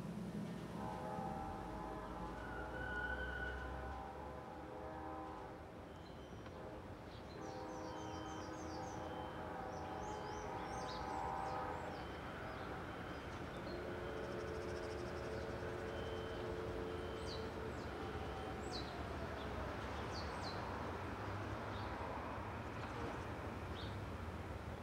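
Quiet city ambience at dawn: a steady low rumble of distant traffic. Over it, long held horn chords sound three times, the last one lower. Short faint high chirps, like birds, come mostly in the middle and later parts.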